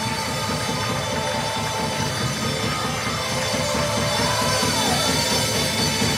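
Live church music: a drum kit playing a fast, steady beat under held instrument notes.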